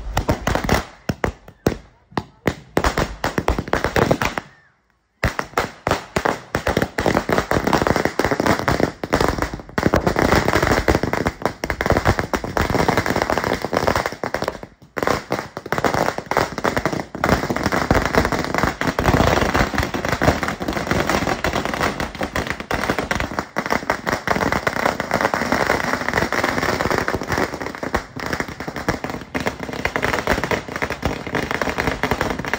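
A long string of firecrackers going off: scattered bangs at first, then, after a short gap about five seconds in, a dense, continuous rapid rattle of bangs.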